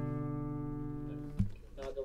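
The final acoustic guitar chord of the song rings out and slowly fades, then stops abruptly with a low thump about one and a half seconds in. A voice speaks briefly near the end.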